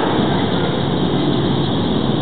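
A large live audience laughing and applauding, an even, steady wash of noise with no single voice standing out.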